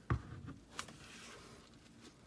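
Handling noise as a plastic doll is set in place on its stand: a soft knock just after the start, two fainter clicks within the next second, then light rustling of the tulle gown.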